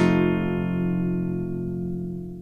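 The closing chord of a band's blues cover, struck once on guitar and left to ring, fading slowly.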